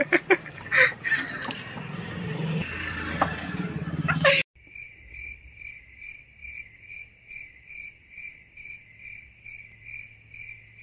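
Street noise with a few sharp knocks, cut off abruptly after about four seconds by a cricket-chirping sound effect: a clean, high chirp repeating about twice a second.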